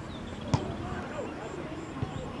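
A football kicked once, a single sharp thump about half a second in, over open-air pitch ambience with distant players' shouts.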